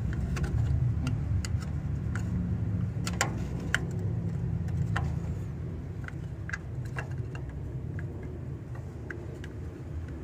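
Irregular small clicks and taps from wires, crimp connectors and copper tubing being handled around an air-conditioner compressor, over a steady low rumble.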